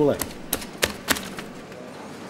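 A few sharp clicks, about four in the first second, right after the end of a man's spoken word.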